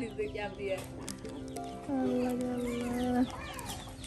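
Hens clucking in a yard, under background music whose long held notes are loudest about two to three seconds in.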